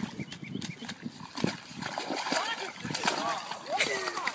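Dog splashing about in a muddy puddle: repeated wet slaps and splatters of mud and water.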